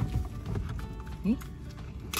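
Soft background music under a few light knocks and taps as hands work at a small plastic package that is hard to open. A short questioning 'Eh?' is heard just past the middle.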